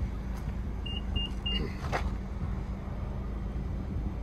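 Power liftgate of a 2022 Infiniti QX50 opening: three short high beeps about a second in, a click, then the liftgate motor running as the tailgate rises, over a steady low hum.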